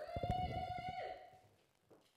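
A steady pitched tone held for about a second and a half, with a rapid crackle or rattle under it, stopping about a second and a half in.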